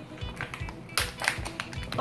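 Background music with a steady beat, with a few sharp crackles as the seal is peeled off a Kinder Joy plastic egg half. The loudest crackle comes about a second in.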